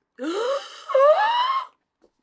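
A woman's excited, wordless vocal cries of delight: a short rising one, then a longer one that climbs higher in pitch, ending about a second and a half in.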